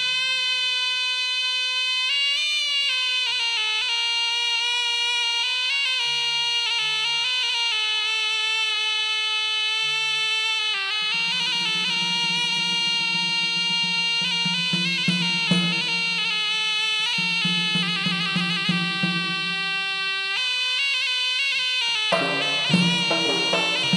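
Acehnese traditional dance music: a reedy wind instrument plays a sustained, ornamented melody, with a few scattered frame-drum beats at first and a steady frame-drum rhythm joining about halfway through.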